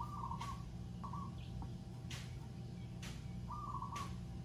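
A bird calling in the background: three short warbling calls, one at the start, one about a second in and one near the end, over a steady low hum.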